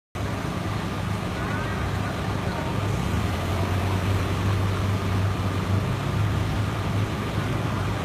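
Steady low engine hum over a haze of traffic noise.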